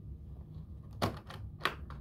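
Metal latches of a hardshell guitar case clicking open: two sharp clicks about half a second apart in the second half, with fainter clicks around them.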